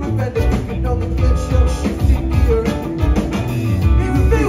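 Live band playing at full volume: drum kit and bass, electric guitars, and a trumpet and trombone horn section holding notes.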